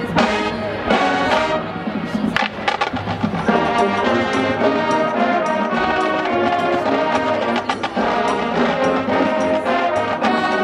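College marching band playing: drumline strokes in the first few seconds, then the brass section holding full, loud chords.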